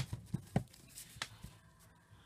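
A few sharp knocks and light paper rustling as hands press and pat a paper towel over stamped tissue paper on a cutting mat; the loudest knock comes right at the start, with smaller ones spaced out after it.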